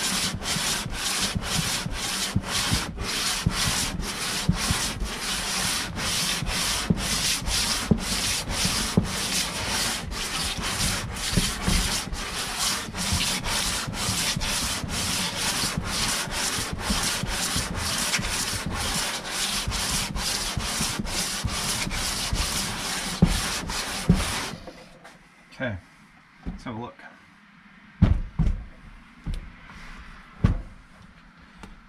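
Aluminum Jeep 3.7L cylinder head being hand-lapped face down across 220-grit adhesive sandpaper on a flat bench, resurfacing its gasket face. The rasping sanding strokes repeat about twice a second and stop suddenly about 24 seconds in, followed by a few knocks as the head is handled.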